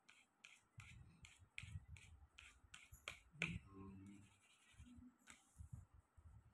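Faint pencil scratching on paper in short, quick strokes, about three a second, as loose circles and lines are sketched.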